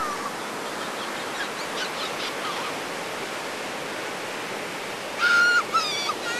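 Ocean surf from a large hurricane swell breaking and washing up a sandy beach, a steady wash of noise. Near the end a loud, high-pitched cry is held for about half a second, followed by a shorter one.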